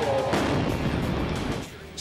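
A bomb exploding: a sudden loud blast about a third of a second in, followed by a dense rush of noise and echo that lasts about a second before dropping away.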